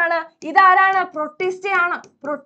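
A woman's voice in drawn-out, sing-song speech, with long held syllables.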